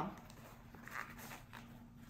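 Faint rustling of a fabric sun hat being handled and folded, with one soft brush about halfway through, over a steady low hum.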